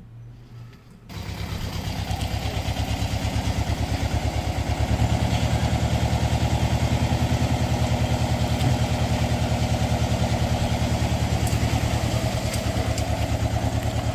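Compact tractor's engine running steadily with a fast, even pulse while its hydraulic trailer is tipped to dump a load. The engine comes in suddenly about a second in.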